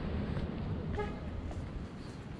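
Steady low outdoor rumble, with one short horn-like toot about a second in.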